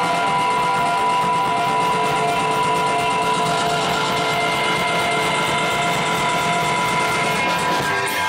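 Live band playing instrumental music: a long held chord of steady tones over a dense wash, with little drumming, that gives way near the end as the band comes back in.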